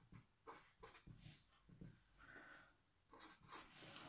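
Marker pen writing on paper: a string of short, faint scratching strokes as letters and numbers are written.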